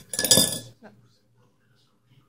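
A spoon stirring in a cup of milk, scraping and clinking against the side in a short burst in the first second, followed by one small click.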